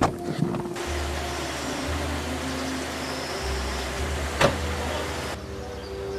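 A car running, a steady rushing noise with a low hum that starts and cuts off abruptly, with a sharp knock about four and a half seconds in, under soft background music.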